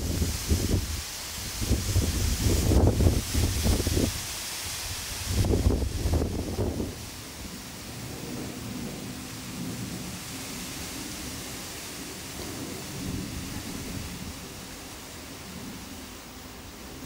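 Wind buffeting the camera microphone: gusty, irregular low rumbles with hiss for the first seven seconds or so, then a quieter, steadier rumble.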